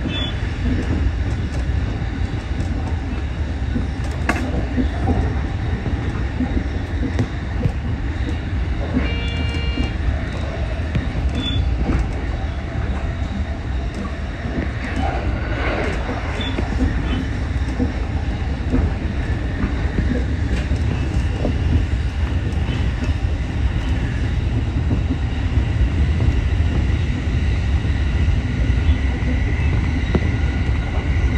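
Steady low rumble of an electric commuter train running, heard from inside the train, with occasional clicks from the wheels and a short tone about nine seconds in.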